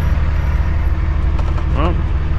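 Cummins ISX diesel engine of a 2008 Kenworth W900L semi running at low speed, heard from inside the cab as a steady, loud low rumble.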